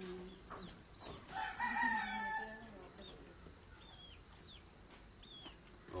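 A rooster crows once, starting about a second and a half in and lasting just over a second, the loudest sound here. Short high chirps from small birds come every so often.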